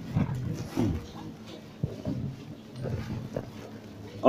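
Low, indistinct murmur of men's voices praying in undertone, in short broken phrases that rise and fall, with a few faint knocks.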